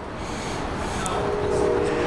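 Rumble of a large passing vehicle, growing steadily louder, with a steady whine joining in about a second in.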